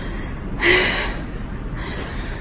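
A woman's short, breathy laugh about half a second in, over a steady low background rumble.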